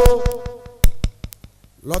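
A man's voice into a microphone trailing off on a long held syllable. It is followed in a short pause by a handful of sharp clicks, one of them loud about a second in.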